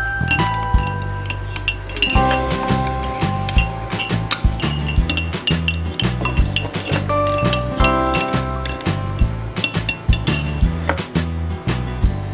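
Metal spoon clinking repeatedly and irregularly against a glass jar of water as salt is stirred in to dissolve it, over background music.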